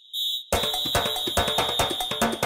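Segment-intro jingle: a high electronic double beep like an alarm, then, about half a second in, music with a fast, even beat and a high tone held over it.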